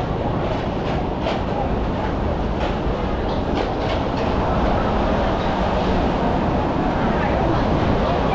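Busy street ambience: a steady low rumble with scattered clicks and knocks in the first half and some voices in the background.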